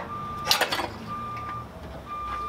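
A vehicle's reversing alarm beeping steadily about once a second, three half-second beeps, over a low engine rumble. A short clatter about half a second in.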